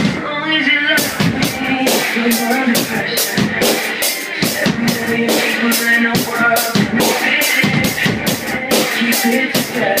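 Drum kit played in a steady beat, cymbal and snare strokes a few times a second, over a recorded pop song.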